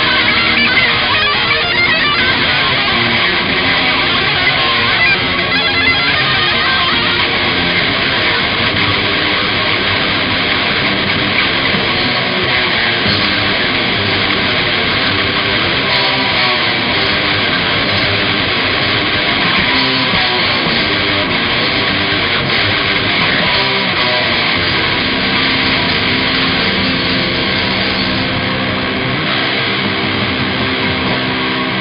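Live heavy metal band playing: distorted electric guitars and a drum kit, loud and continuous.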